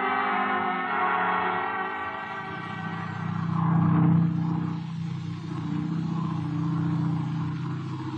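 An orchestral music bridge fading out over the first couple of seconds under a steady low drone: a radio-drama sound effect of a light plane's engine in flight, swelling about four seconds in.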